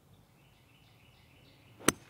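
Golf club striking a teed ball: a single sharp crack near the end.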